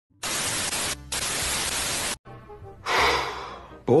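Television static hiss for about two seconds, broken for an instant about a second in, then cut off suddenly. After that comes a short rush of noise that fades away.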